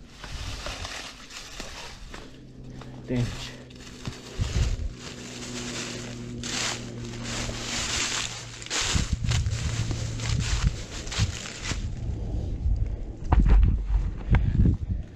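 Dry leaves crackling and rustling underfoot on a steep slope. A dirt bike engine idles faintly and steadily underneath.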